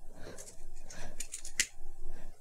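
Hard plastic model-kit parts clicking and clacking as they are handled, a few sharp clicks, the loudest about a second and a half in.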